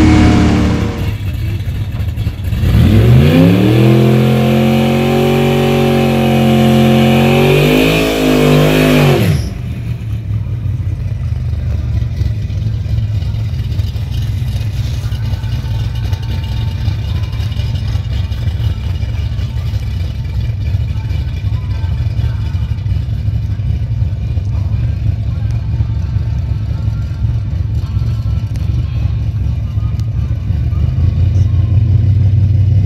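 Chevy 350 small-block V8 with a solid cam at full throttle, heard from inside the car: the revs fall away just after the start, then climb and hold high for several seconds before cutting off abruptly. After that, a V8 idling with a steady low rumble.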